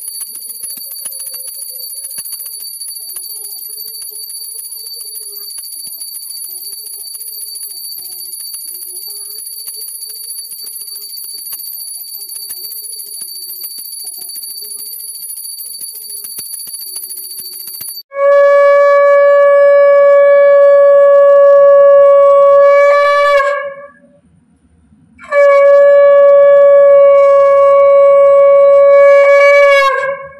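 A steady high ringing for the first part, then a conch shell (shankha) blown twice. Each blast is a loud, steady horn-like tone lasting about five seconds, with a brief upward bend in pitch as it ends.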